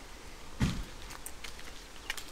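A single short, dull low thump about half a second in, over a quiet outdoor background.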